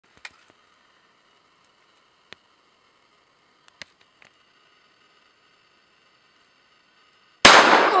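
.410 shotgun fired once, a sudden loud shot about seven and a half seconds in, its echo dying away over more than a second. A few faint clicks come before it.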